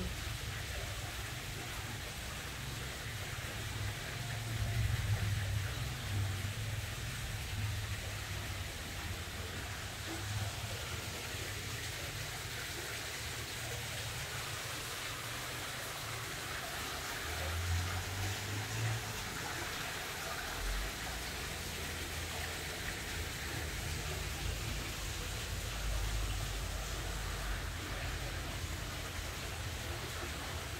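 A steady, even hiss like rain or running water, with irregular low rumbles from the phone being carried and handled.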